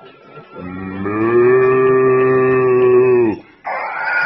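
A man imitating a cow's moo: one long, low, steady call of about three seconds. Just before the end a baby starts to cry.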